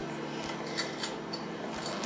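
A handheld noodle cutter rolling through a sheet of buttered dough: a few faint, light ticks over a steady low room hum.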